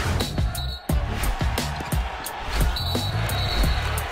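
Sports-show opening theme music with a heavy, punchy beat and strong bass. It drops out briefly just before a second in, then carries on.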